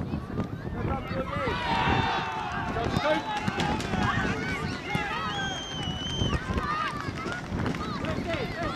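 Several voices shouting over one another, the busiest stretch a couple of seconds in: players, coaches and spectators yelling at a youth football match. One high, steady tone lasts about a second, past the middle.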